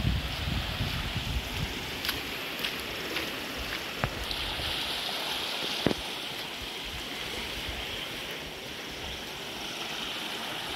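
Floodwater running across a paved road in a steady rush, with a few faint clicks.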